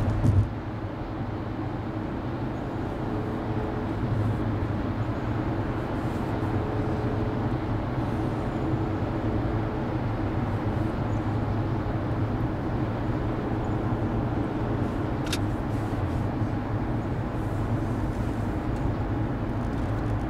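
Steady road and engine noise of a car cruising at highway speed, about 60 mph, with a low rumble of tyres and drivetrain. A brief thump comes just after the start, and a faint click about fifteen seconds in.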